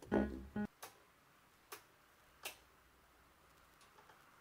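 Music played through a Yamaha CA-400 integrated amplifier cuts off abruptly within the first second. Then come three sharp clicks about 0.8 s apart, with a fainter one near the end, as the amplifier's front-panel rotary function selector is turned.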